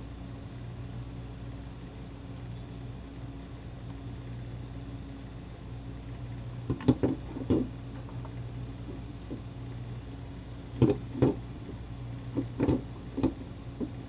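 Light clicks and taps of a plastic GoPro housing and mount being handled on a wooden table while a tether cord is threaded around it, coming in a few small clusters about seven seconds in and again near the end. A steady low hum runs underneath.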